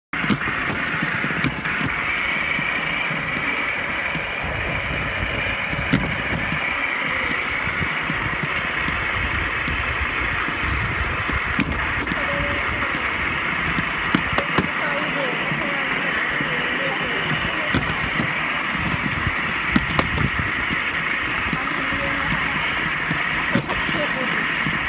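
Steel wheels of a rail trolley rolling along a grassy railway track: a steady rumble and hiss with a few sharp clicks scattered through.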